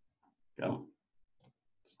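A man's brief low grunt about half a second in, a short wordless vocal noise.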